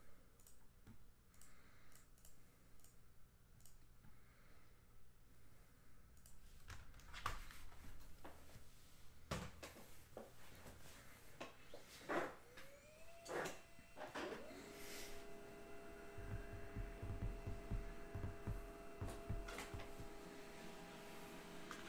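Faint scattered clicks and knocks, then a small motor whirs up about twelve seconds in and runs on with a steady whine and a low rumble.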